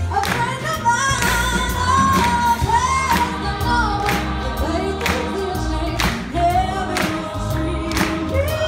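Live band music with singing: voices carry a melody over a drum kit keeping a steady beat, with bass and electric guitar underneath.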